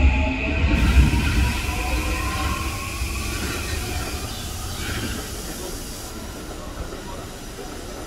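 Toei 5500-series electric train pulling away and accelerating, its motor whine rising slowly in pitch over a rumble of wheels on rail that fades as the train draws off.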